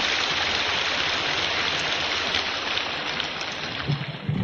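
Audience applause in a lecture hall, a dense, steady clapping that eases slightly near the end.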